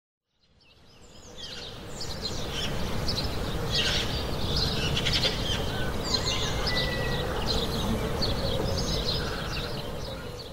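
Birds chirping and trilling over a steady outdoor background hiss, fading in over the first two seconds.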